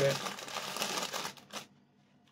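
Rustling, crinkly handling noise for about a second and a half, ending abruptly.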